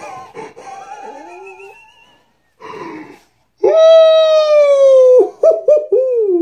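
A man howling in a loud, high voice: a wavering cry that climbs at first, then a long held note that slides slowly down and breaks into a few short yelps near the end.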